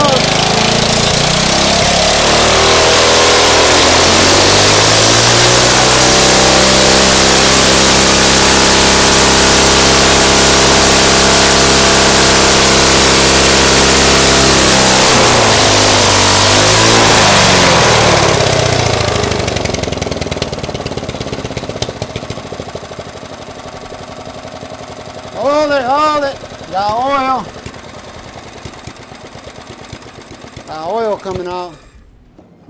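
A Briggs & Stratton single-cylinder engine with a clear see-through head, running on nitromethane, revs up to full throttle over the first few seconds and holds a steady high speed. At about 15 seconds its pitch falls as it slows, and it dies out on its own at about 18 seconds.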